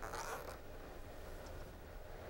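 A brief, faint rustle of a plastic-sheathed cable and coil cord being handled, in the first half second, then only a low steady hum.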